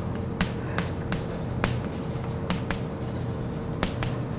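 Chalk writing on a blackboard: a string of sharp, irregular taps and short scratches as the chalk strikes and drags across the board, over a steady faint hum.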